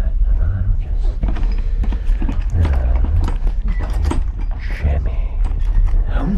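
A string of small clicks and knocks, like a key and latch being worked as a door is quietly unlocked, starting about a second in, over a steady low hum.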